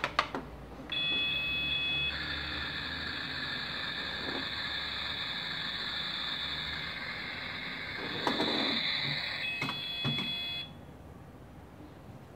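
A toy kitchen's battery-powered sound effect through its small speaker: a high electronic tone about a second in, then a long steady hiss like food sizzling, with the tone returning before it all cuts off suddenly near the end. A few plastic door clicks at the start.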